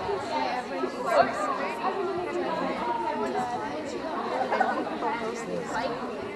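Chatter of many overlapping voices from the people in a gymnasium during a volleyball game, with no clear words.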